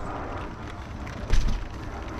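A single dull thump a little over a second in, over a steady background hiss.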